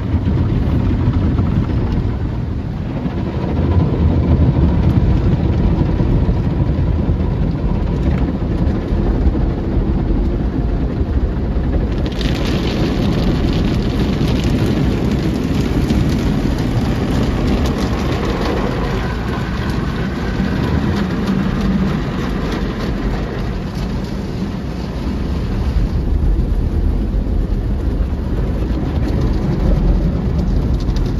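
Automatic car wash heard from inside the car: a steady, loud rumble of water and machinery against the body. About twelve seconds in, a sharper hiss of spraying water starts suddenly, then eases off near the end.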